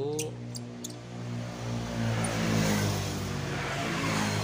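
A motor vehicle passing nearby: a steady engine hum that swells, loudest around two and a half to three seconds in, then eases.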